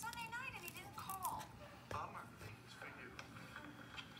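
Faint speech in the background, a voice talking in short phrases, with a sharp click about two seconds in.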